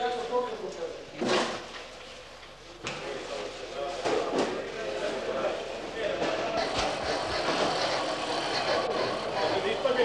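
Indistinct background voices, with three sharp knocks about one, three and four and a half seconds in as mail sacks are handled at a metal cage cart; the voices grow denser in the second half.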